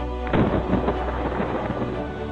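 A sudden clap and rumble of thunder breaks in over soft background music about a third of a second in, then dies away over a second or so while the music carries on.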